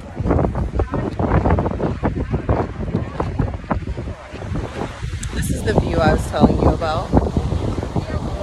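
Wind gusting against a phone microphone, with the wash of surf breaking on the beach below, and voices midway through.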